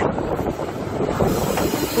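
Wind blowing across a phone's microphone: a steady, rushing noise that wavers in level, with no other distinct sound standing out.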